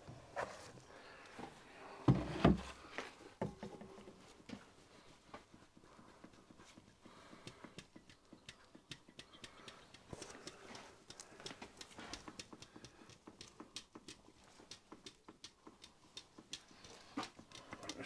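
Light metallic clicks and knocks from hand work on a small steam engine's oil pump: two louder knocks about two seconds in, then irregular light clicking as the pump is worked by hand.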